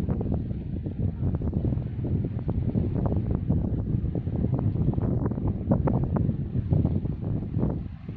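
Wind buffeting the microphone: a heavy, unsteady low rumble with irregular gusty spikes.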